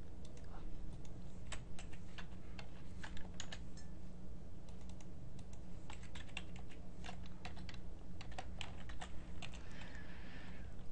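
Computer keyboard being typed on: irregular runs of key clicks coming in short bursts, over a steady low hum.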